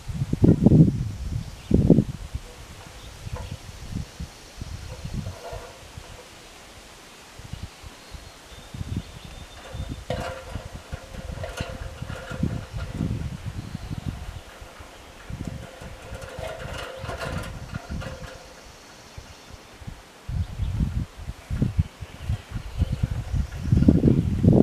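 Wind gusting over the microphone in irregular low rumbles, with aspen leaves rustling; the gusts are strongest near the start and again near the end.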